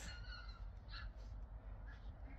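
Faint bird calls: two short pitched calls in the first second, over a low steady background rumble.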